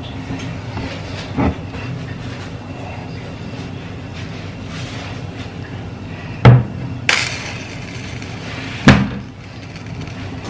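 A heavy pot handled and set down on a glass-top hob: two loud knocks, about six and a half and nine seconds in, with a short hiss just after the first, over a steady low hum.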